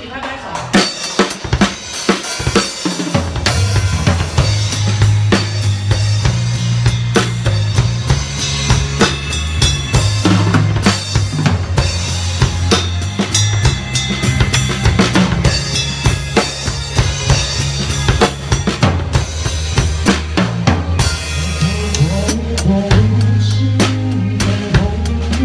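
Live rock band playing, heard from the drummer's seat: the drum kit's sharp snare, kick and cymbal strokes are loudest, and deep sustained bass notes come in about three seconds in.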